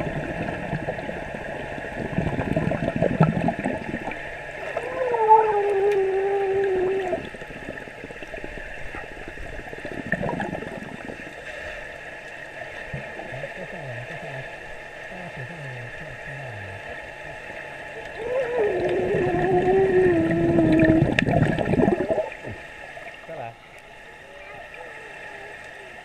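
Pool water heard from underwater through a camera housing: gurgling and sloshing with bursts of bubbles and splashing. Twice, a muffled voice is held for about two seconds on a humming tone that sinks slightly, distorted by the water.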